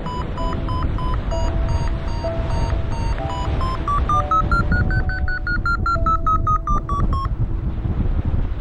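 Paragliding variometer beeping: a quick train of short electronic beeps that rise in pitch and come faster about four seconds in, the vario's signal that the glider is climbing in lift. The beeps stop suddenly near the end. A lower held tone sounds beneath them, over a steady rush of wind on the microphone.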